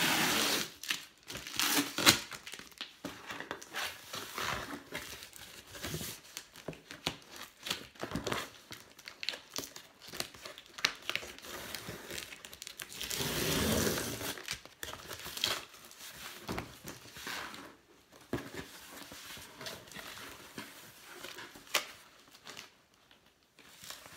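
A cardboard box being opened by hand: strips of tape and paper torn off and cardboard and paper crinkling and rustling in irregular bursts. The rustling is loudest right at the start and in a longer stretch about halfway through.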